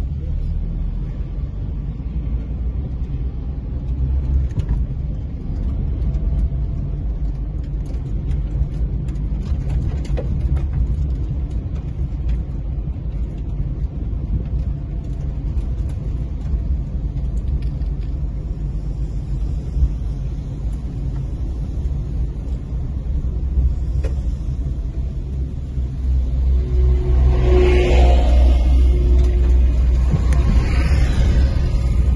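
Car cabin noise while driving: a steady low rumble of engine and tyres on the road, growing louder near the end as the car passes parked dump trucks.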